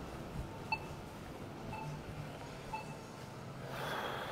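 Pedestrian crossing signal's locator tone: faint short beeps about once a second over a low hum, with a brief rush of noise near the end.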